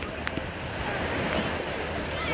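Shallow sea water washing and lapping with wind on the microphone, a steady rush of noise, with one short click about a quarter of a second in.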